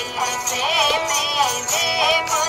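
Ravanahatha, the Rajasthani bowed stick fiddle, playing a wavering, ornamented folk melody with slides between notes.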